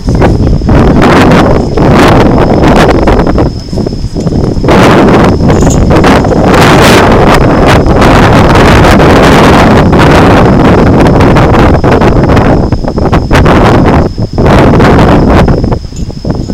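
Wind buffeting the microphone: loud, rough gusting noise that eases briefly about four seconds in and again near the end.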